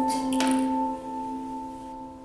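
Background piano music: a chord struck just before and left to ring, slowly fading, with a brief soft hiss about half a second in.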